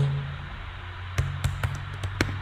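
Keys tapped on a computer keyboard: a few sharp clicks in the second half, over a steady low hum.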